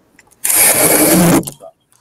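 A loud, rasping tearing noise lasting about a second, like packing tape being pulled off a roll. It comes from a screen being moved and rigged into place.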